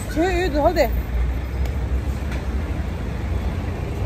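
Steady low rumble of road traffic on a busy street, with a woman's voice briefly at the start.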